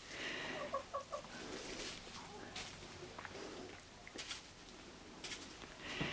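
Chickens clucking softly a few times near the start, then faint scattered taps and rustles of the birds pecking and scratching in wood-shaving litter.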